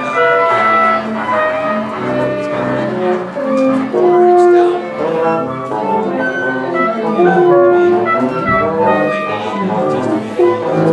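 A small ensemble of strings and wind instruments playing together, with held notes shifting from one to the next in a melody.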